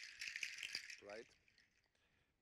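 Strings of dried fruit-shell rattles shaken hard, giving a dense, dry clattering hiss that stops about a second in.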